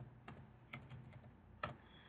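Typing on a computer keyboard: a short run of faint, separate keystrokes as a word is typed.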